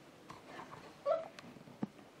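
A few short, high-pitched vocal sounds, like brief giggles or squeaks, about a second in, then a sharp click just before the end.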